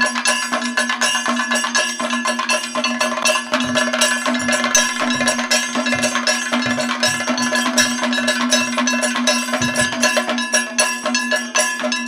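Kathakali percussion accompaniment: chenda drum strokes over a constant ringing of small bell-metal cymbals and gong, with a steady drone tone underneath. Deeper drum strokes come thicker from about three and a half seconds in.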